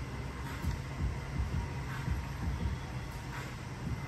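Steady low background rumble and hiss, with a few faint soft knocks.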